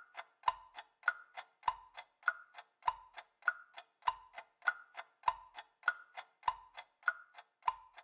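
Cartoon clock ticking: an even tick-tock of about three ticks a second, alternating between a higher and a lower click, with a soft low knock on every fourth tick.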